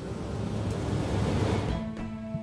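A rushing, wind-like whoosh that swells steadily louder and cuts off suddenly near the end, where the film score's held notes begin.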